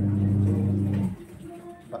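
A man humming a low, steady closed-mouth "mmm" at one flat pitch, which stops about a second in.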